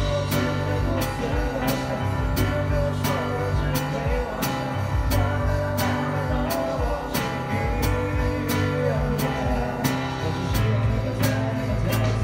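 A live band plays with a drum kit keeping a steady beat of regular hits, several a second, over bass and guitar.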